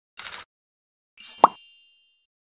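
Sound effects for an animated logo intro: a short swish, then about a second in a plop with a high ringing chime that fades away.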